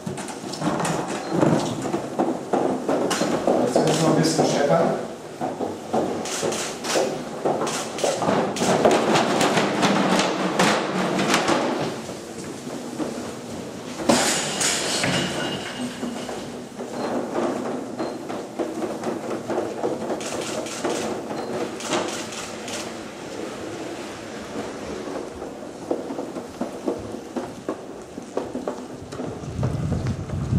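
A net bundle of wooden picture frames being dragged over a hard floor, scraping and clattering with many irregular knocks. People are talking indistinctly over it, most in the first half.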